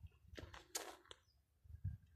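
A few short rustles and a click, then a soft low thump near the end, from someone moving among almond-tree branches.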